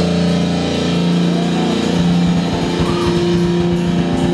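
Amplified, distorted electric guitar and bass holding a loud sustained drone of several steady tones, with a few faint wavering high notes above. About halfway through, the low end breaks into a fast, stuttering pulse.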